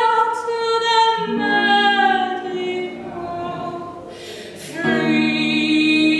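A woman singing a slow English song with long held notes, accompanied by guitar. The sound eases off from about three seconds in, with a short breath-like hiss, then the voice comes back strongly about five seconds in.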